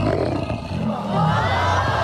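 A bear roaring: one long roar that swells and falls in pitch.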